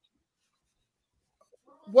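Near silence on a gated online call, with a few faint brief noises and then a voice starting to speak just before the end.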